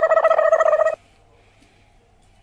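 A loud, steady buzzing tone with a rapid flutter that cuts off suddenly about a second in.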